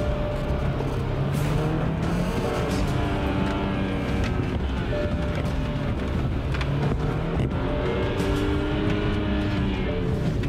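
A BMW car driven at speed, its engine and road noise heard from inside the cabin, under background music of long held notes.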